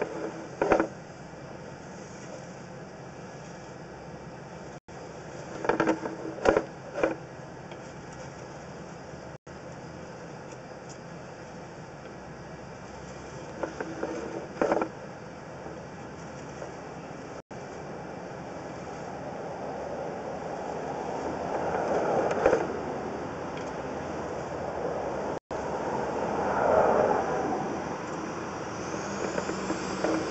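Steady mechanical rumble with short rattling bursts every several seconds as a sewer inspection camera's push cable is pulled back out of the line. The sound drops out for an instant four times.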